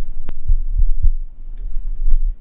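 A sharp click, then three dull low thumps in quick succession, over a steady low hum.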